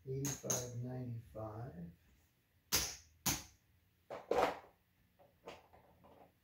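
Casino chips clacking as a stack is handled and set into a chip rack: a few sharp, separate clacks in the second half, about a second apart.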